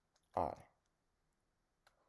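Clicking from a computer pointing device used to hand-write on a digital whiteboard: a few faint ticks, then one sharp click near the end.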